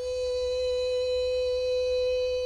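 A man's voice holding one steady, high-pitched 'eee', imitating the constant whine of an EL wire or EL panel's battery-pack inverter.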